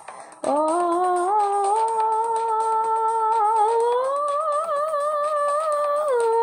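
A woman's voice singing long wordless held notes. The voice comes in about half a second in with an upward scoop, sustains a steady pitch, then steps higher with a wavering vibrato about four seconds in.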